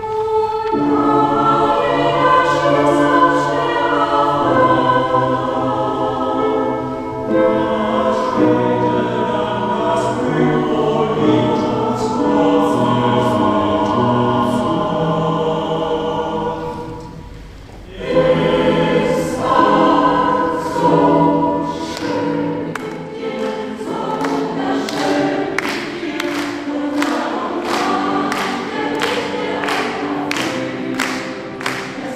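Mixed choir of men's and women's voices singing a song in harmony, with a short break between phrases about halfway through. Crisp consonant sounds come through on many syllables in the later phrases.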